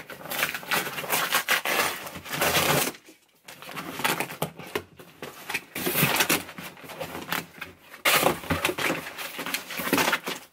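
A cardboard shipping box being opened by hand: tape tearing and cardboard flaps and paper packing rustling and crinkling in long spells, with a brief pause about three seconds in.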